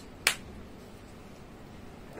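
A single sharp click about a quarter of a second in, then only a low background.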